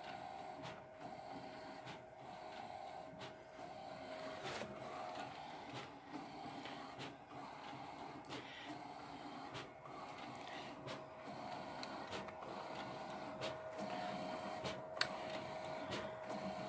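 Large-format HP inkjet printer printing a wide sheet: a faint steady whine from its mechanism, with short clicks scattered through it.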